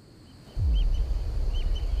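Outdoor bush ambience with a few faint bird chirps. A deep low rumble comes in about half a second in, opening with a short falling sweep, and stays as the loudest sound.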